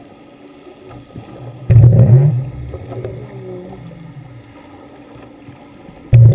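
Muffled underwater noise picked up through a GoPro's waterproof housing. A faint low rumble runs under a sudden loud, low surge about two seconds in that fades over about a second, and another surge comes right at the end.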